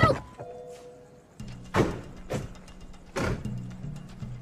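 Three heavy thuds of car doors shutting, about two seconds in, half a second later and again near the end, over background music with a low steady drone.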